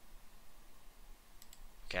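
Two light computer mouse clicks close together, about a second and a half in, against faint room noise.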